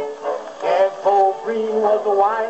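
A 1927 Victor 78 rpm record of a jug band playing on a phonograph: string-band accompaniment with a man singing the opening line of the verse. The sound is thin, with no high treble.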